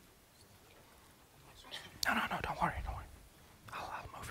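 Quiet room tone, then about halfway through a sudden click on the lectern microphone followed by a few quiet, indistinct words spoken close to it with a low bump of handling; another brief murmur near the end.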